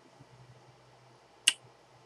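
A single sharp click about one and a half seconds in, with near silence around it.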